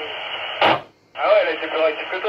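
Retevis RT-24 UHF walkie-talkie receiving: a burst of hiss ending in a sharp click, then a short gap, and about a second in a thin, clipped voice comes through the radio's speaker, showing reception works.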